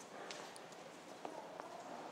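A few faint footsteps of hard-soled shoes clicking on a hexagonal stone mosaic tile floor.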